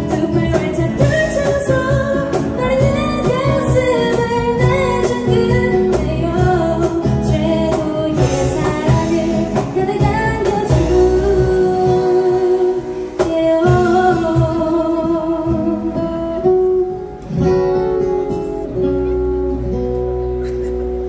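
Live acoustic band performing a pop song: a woman singing over strummed acoustic guitar and a steady percussion beat, with longer held notes in the second half as the song draws to its close.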